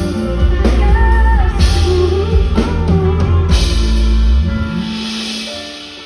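Live pop-rock band playing with drum kit, guitar and heavy bass. About four and a half seconds in, the drums and bass drop out and a held chord fades away.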